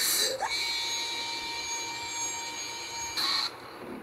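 Electronic sound effect: a burst of static with a quick upward sweep, then a steady high-pitched electronic tone held for a couple of seconds, cut off by a second burst of static a little after three seconds in.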